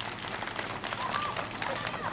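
Audience applause: many hands clapping in a dense, steady patter.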